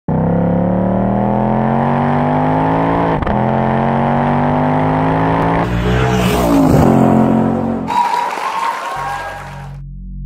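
Car engine accelerating hard up through the gears, its pitch climbing steadily and dropping at each shift, about three seconds in, again near five and a half seconds and near seven, then a rush of noise near the end.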